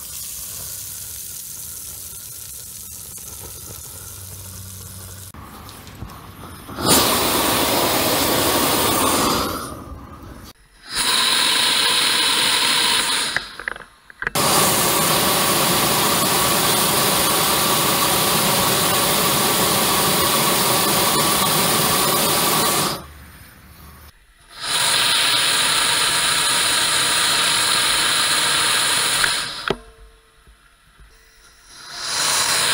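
Harbor Freight propane flame-thrower torch blasting with its turbo trigger held: a loud rushing hiss of burning propane, which sounds like a jet engine afterburner. It comes in four blasts with short breaks between, the third about nine seconds long, after a quieter hiss of the low pilot flame.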